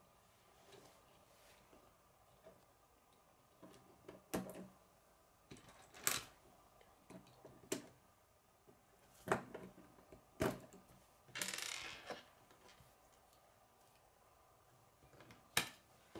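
K'nex plastic rods and connectors clicking as they are snapped together by hand: a handful of sharp, separate clicks at uneven intervals, with a short rustle of pieces being handled partway through.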